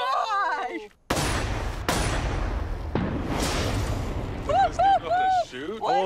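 A single shot from a Smith & Wesson .44 Magnum revolver about a second in, a sudden sharp crack, followed by a few seconds of noisy rumble with two more sharp cracks. Near the end come excited whoops from the onlookers.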